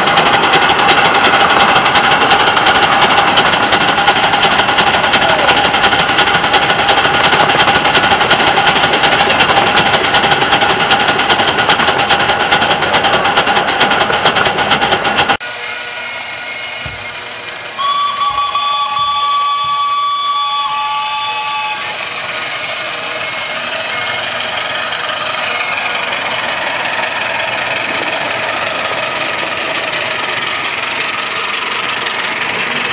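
Loud running noise of a miniature steam locomotive, heard close up from on board, with a fast, dense rattle. About halfway through it cuts to a lineside recording, where the locomotive's steam whistle blows for about four seconds, followed by the steady sound of the passing train.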